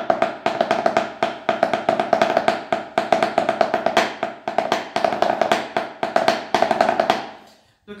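Wooden drumsticks playing a snare-drum (tarola) ranchero rhythm on a towel-covered surface: a steady run of rapid strokes with louder accents, stopping shortly before the end.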